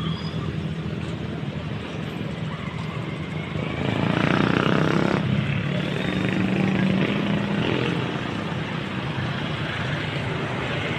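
Engine noise from nearby motor traffic: a steady low hum that grows louder from about four to eight seconds in.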